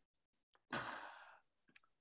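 A single audible sigh: one breath out through the mouth, starting a little before the middle and fading away within about half a second.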